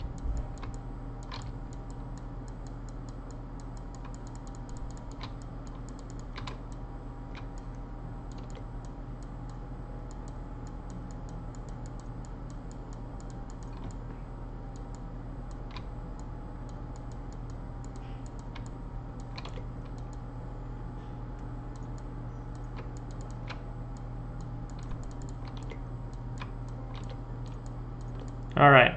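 Sparse, irregular clicks of computer keys being tapped every second or few, over a steady low electrical hum.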